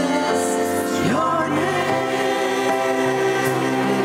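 Small mixed church choir, men's and women's voices together, singing a hymn in long held notes.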